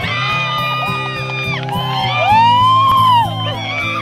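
Background music with people whooping and yelling over it; the loudest is one long shout that rises and falls, about two seconds in, lasting about a second.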